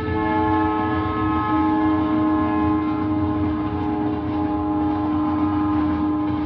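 A train horn sounding one long, steady chord over the low rumble of a train, starting right at the beginning and held without a break.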